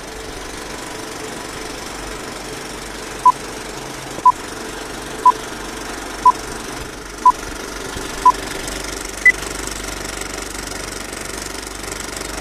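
Old film-projector sound effect, a steady mechanical rattle, under a film-leader countdown: six short beeps one second apart, then one higher-pitched beep a second later.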